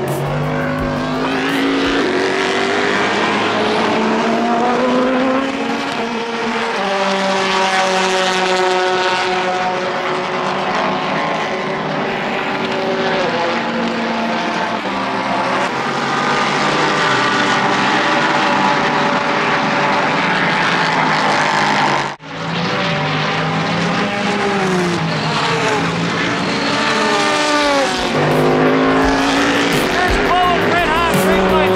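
Race cars passing at full speed one after another, engine notes overlapping and dropping in pitch as each car goes by. A brief sudden drop-out about two-thirds of the way through.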